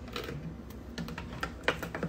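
A few light, irregular clicks and taps from the phone being handled close to its microphone.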